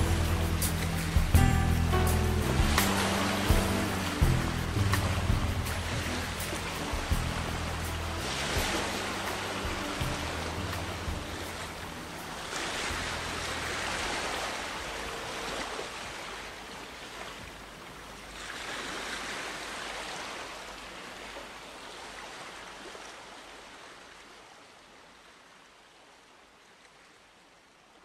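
The outro of a pop song fading out. Bass notes and beat hits die away in the first few seconds, leaving slow swells of rushing, surf-like noise that grow fainter toward the end.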